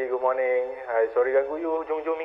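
Speech heard through a telephone: a thin, narrow-band voice from the other end of a phone call, with no low or high tones.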